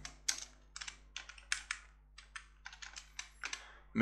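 Typing on a computer keyboard: a run of irregular key clicks with a short pause about halfway.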